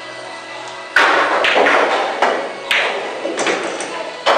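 Pool balls clacking: a sharp hit about a second in, then several more clacks spread over the next few seconds, each ringing briefly.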